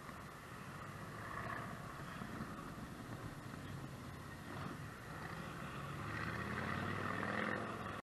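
Wind and road noise picked up by a hat-mounted camera on a moving bicycle, a steady rumble that grows louder near the end.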